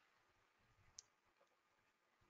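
Near silence, broken by one short, faint click about halfway through.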